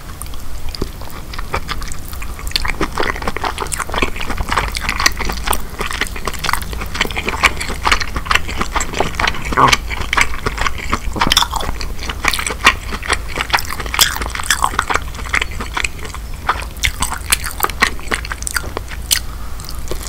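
Close-miked chewing and mouth sounds of eating king crab meat with Alfredo sauce: many quick, irregular clicks throughout, over a low steady hum.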